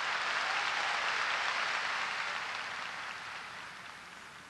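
Congregation applauding after a line of the sermon, the clapping swelling at first and then slowly dying away.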